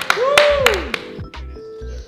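A man's drawn-out exclamation rising and falling in pitch, with a few sharp hits, giving way about a second in to background music with steady held notes.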